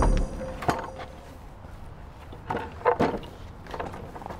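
Background music cuts off, followed by a handful of scattered, irregular sharp knocks and thuds.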